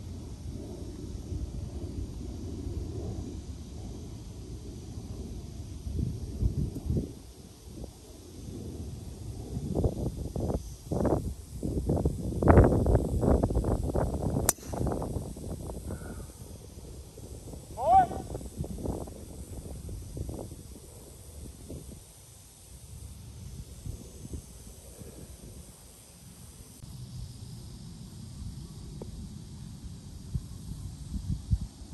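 A driver strikes a golf ball off the tee, one sharp crack about halfway through.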